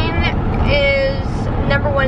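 Steady low rumble of road and engine noise inside a moving car's cabin, under voices talking.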